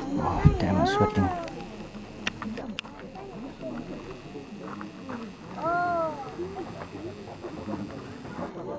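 Crowd of visitors talking among themselves, with two short pitched calls that rise and fall, the first about a second in and the second about six seconds in.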